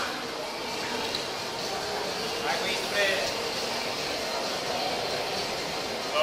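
Steady background hum of a covered urban forecourt, with faint, indistinct men's voices around the middle.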